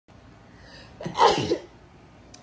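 A woman sneezing once, about a second in, after a faint breath in.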